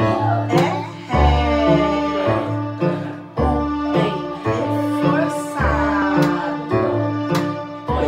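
Digital piano playing a simple children's tune, with a deep bass note returning every second or two under held and wavering higher notes.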